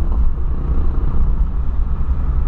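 Steady low rumble of engine and road noise inside the cabin of a 2008 Volkswagen Polo sedan 1.6 driving along at a steady pace.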